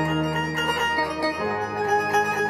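Trap beat instrumental in a breakdown: a plucked-string melody plays on its own, the 808 bass and drums dropped out, with a change of note about one and a half seconds in.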